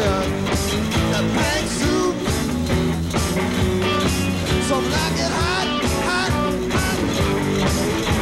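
Live rock band playing an instrumental passage: electric guitars over bass guitar and drums, with a lead line bending up and down in pitch.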